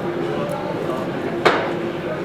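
Indistinct chatter of several voices in a room, with one sharp knock about one and a half seconds in.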